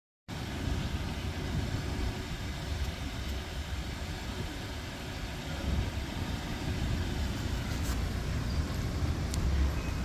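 Wind buffeting the microphone outdoors: an uneven, gusting low rumble, with a couple of faint clicks near the end.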